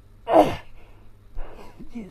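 A man's loud strained grunt-like exhalation about half a second in, falling in pitch, then softer effortful breaths with voice near the end. The sounds come from the exertion of holding a prone back-bend with his legs raised over his back.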